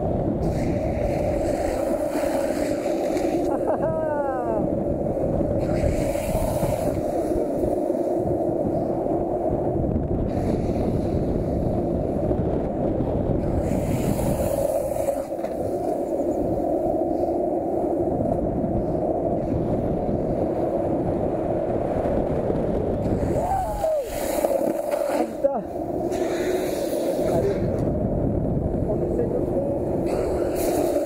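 Skateboard wheels rolling fast down asphalt, a steady loud rumble with a constant drone. Brief falling whines come about four seconds in and again about 24 seconds in.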